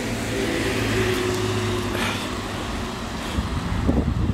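Street traffic: a motor vehicle's engine running close by as a steady hum, over a background of road noise.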